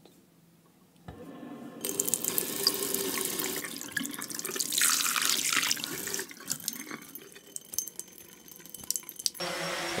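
Tap water running into a bathroom sink and splashing onto the metal drain plug, recorded close up with a handheld microphone. The flow starts about a second in and runs steadily until shortly before the end.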